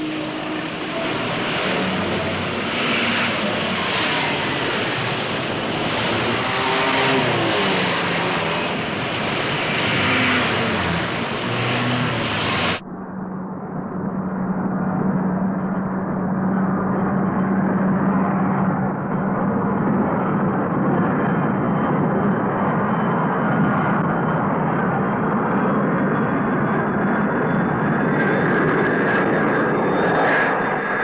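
Aircraft engine noise on a film soundtrack: a loud rushing noise that switches abruptly, about thirteen seconds in, to a duller, steady drone with a constant low hum.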